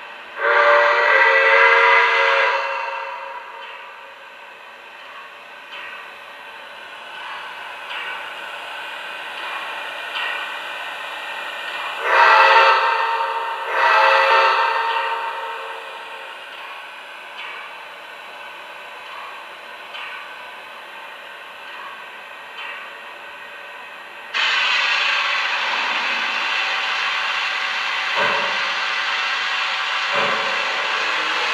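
Lionel VisionLine Niagara model steam locomotive's onboard sound system sounding a multi-tone steam whistle: one long blast, then two shorter blasts about ten seconds later. About 24 seconds in, a steady steam hiss starts suddenly.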